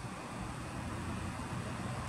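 Faint, steady outdoor background noise in a pause between speech, with no distinct sound standing out.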